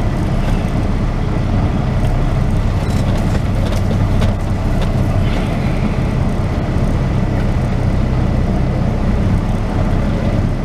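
Diesel semi-truck engine running steadily at low speed, a constant low drone heard from inside the cab.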